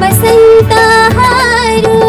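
A woman singing a song live into a microphone, with a melody that bends and holds notes. She is accompanied by a band in which a barrel hand drum keeps a steady beat.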